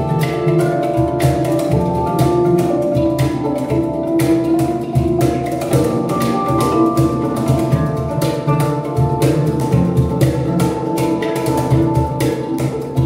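Handpan ensemble of four players with a violin, playing a piece together: a steady rhythm of struck, ringing steel notes, with longer held violin notes over them.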